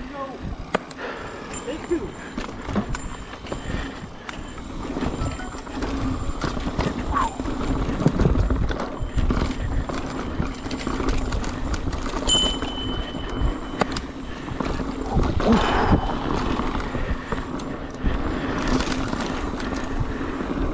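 Mountain bike rolling fast over a leaf-covered dirt trail, with the tyres rumbling and the bike rattling and knocking over bumps. A brief high squeal comes a little after the middle.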